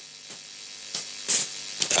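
Faint, irregular clicking over a low steady hum, with a short hiss about a second and a half in.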